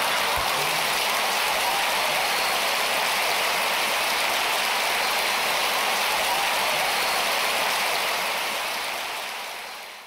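Large audience applauding, a steady dense clapping that fades out over the last couple of seconds.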